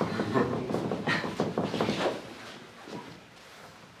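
Soft clicks and rustling with faint indistinct voices in a small room, dying down to quiet room tone about two and a half seconds in.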